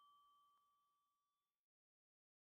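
Near silence: the last faint ring of a chime dying away, cut off about one and a half seconds in.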